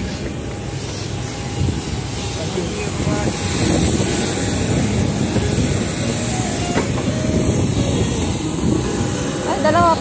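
Steady rumbling airport apron noise with a faint high steady whine, growing louder about three and a half seconds in, with a few footfalls on metal airstairs. A voice is heard near the end.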